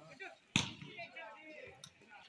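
A single sharp smack of a volleyball's impact about half a second in, with players' voices shouting around it.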